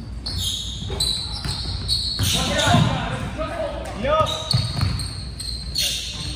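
Indoor basketball play on a hardwood gym floor: sneakers squeaking in short chirps, the ball bouncing and players' feet thudding, with indistinct voices, all echoing in a large gym hall.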